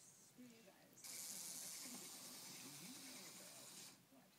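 Flip-dot display's magnetic dots flipping over in rapid succession as the display cycles, heard as a steady high hiss. It starts abruptly about a second in and cuts off just before the end.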